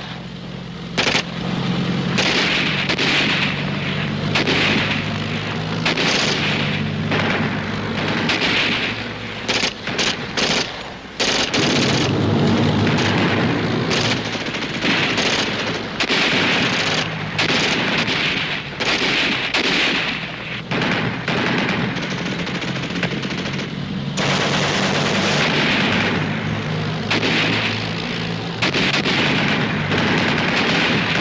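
Battle sound effects: bursts of machine-gun fire and rifle shots, with occasional booms, over a steady low hum.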